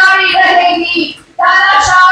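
A woman speaking loudly and forcefully into a microphone, her high-pitched voice amplified, with a short break a little past one second in.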